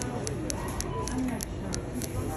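Grocery store checkout ambience: indistinct voices in the background with a run of small, irregular clicks and crinkles from the counter.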